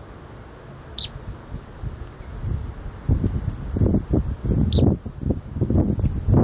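Two short, sharp bird call notes, one about a second in and one near five seconds. From about three seconds on, irregular gusts of wind rumble on the microphone, louder than the calls.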